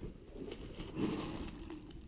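Cardboard scraping and rustling as a white inner box is slid out of a corrugated shipping box, swelling about a second in.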